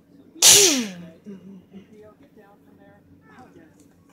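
One loud sneeze about half a second in: a sharp burst of breath followed by a falling voiced sound, fading within about a second.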